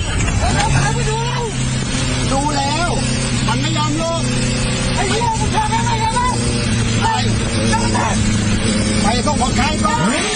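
Steady engine drone and road noise heard from inside a moving van ambulance's cabin. Voices talk over it in short stretches.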